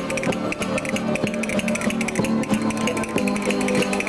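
A Valencian folk string band (ronda) playing a jota, with guitars strummed in a fast, even rhythm under held melody notes.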